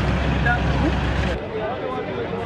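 A vehicle engine idling as a steady low drone under the chatter of a crowd, cut off abruptly about one and a half seconds in, leaving only the crowd's voices.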